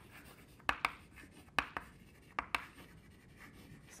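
Chalk writing on a blackboard: faint scratching strokes broken by sharp taps of the chalk striking the board, mostly in quick pairs about three times over.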